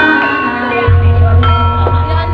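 Javanese gamelan music of the kind that accompanies ebeg dance: metallophone notes struck and left ringing, one at the start and another about 1.4 seconds in, with a deep sustained low tone joining about halfway.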